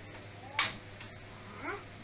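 A single sharp click of a gas stove's knob igniter as the burner is lit, set to a very small flame.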